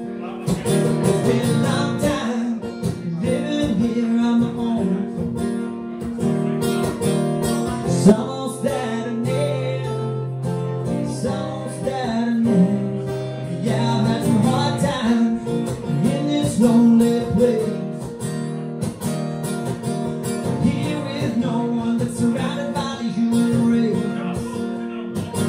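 Live acoustic pop-rock song: a man sings over his own strummed acoustic guitar.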